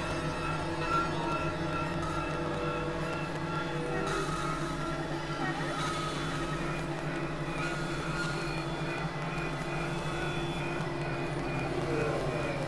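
Experimental electronic drone music: several steady synthesizer tones held over a low hum, with a hiss that thickens about four seconds in.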